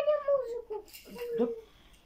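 A small child's high-pitched voice: a drawn-out vocalisation at the start, then a couple of short separate sounds about a second in, fading out near the end.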